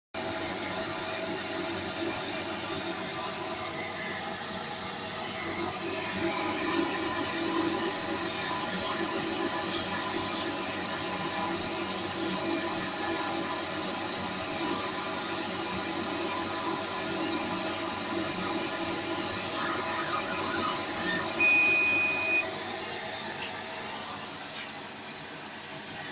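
CO2 laser cutting machine running steadily with a continuous mechanical hum as its head cuts a pattern in synthetic leather. Near the end a loud beep of about a second sounds from the controller, signalling that the cutting job has finished.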